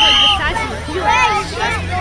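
Overlapping voices of sideline spectators, a babble of talk and calls with no single clear speaker. At the very start a short, steady, high-pitched tone sounds for about half a second, and a steady low hum runs underneath.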